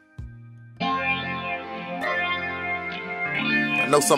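Southern soul music: a faint, sparse opening with a single low thump, then the full band with guitar comes in strongly just under a second in and plays on.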